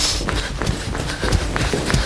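Running footsteps: quick, irregular footfalls, several a second.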